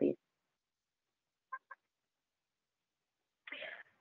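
A pause between spoken lines. The end of a word at the start, then near silence, broken only by two faint, very brief blips about a second and a half in. A faint voice starts up just before the end.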